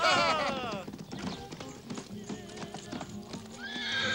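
Horses ridden in: one whinnies at the start, a long falling call, and hooves clop on the ground through the rest, with another whinny rising near the end.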